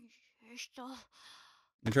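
An anime character's voice, heard quietly: a couple of short vocal sounds, then a breathy sigh. A man starts talking just before the end.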